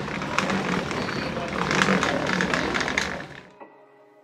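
Outdoor ambience with indistinct voices and clattering, rustling noise, fading out about three and a half seconds in and leaving faint soft music.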